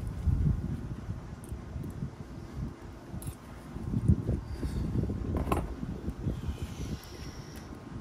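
Handling noise from gloved hands working at the wiring and small metal brackets on a Subaru CVT valve body: irregular low rustling and rubbing with a few small metal clicks, the sharpest about five and a half seconds in.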